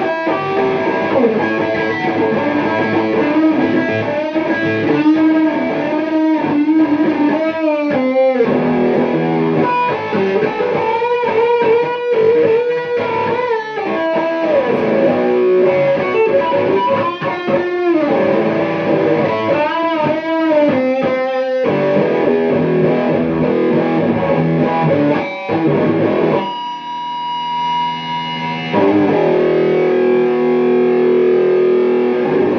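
Electric guitar playing a blues solo: held notes with string bends, broken up by quick runs of short notes, and a sustained chord near the end.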